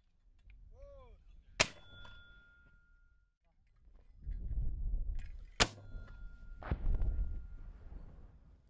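Mortar firing twice, about four seconds apart. Each shot is a sharp report followed by a ringing metallic tone from the tube lasting about a second. A third, shorter crack comes a second after the second shot, over a low rumble.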